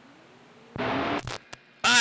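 CB radio receiver on an open channel between transmissions: faint hiss with a faint whistle slowly gliding up in pitch. About three-quarters of a second in, a station keys up with a short, louder burst and a couple of clicks. A voice comes in just before the end.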